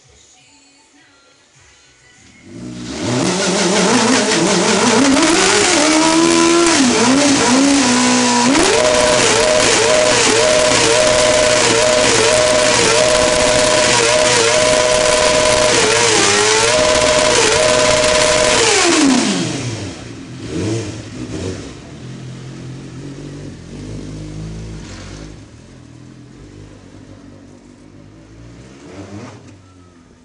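Suzuki sport bike engine revving hard during a burnout, the rear tyre spinning and smoking on the pavement. It comes in loud a couple of seconds in, the revs climb and are held high with small repeated dips, then drop away past the halfway point, leaving a much quieter, lower sound.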